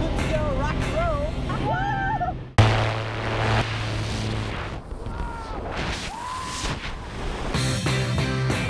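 Background music with a voice, cut about two and a half seconds in by a sudden loud blast of wind and slipstream noise on an action camera's microphone at the open door of a small plane as tandem skydivers exit. The rush goes on for about two seconds. Rock music with guitar comes back near the end.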